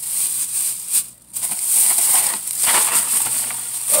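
Plastic shopping bag rustling and crinkling as items are handled. The noise comes and goes unevenly and stops briefly about a second in.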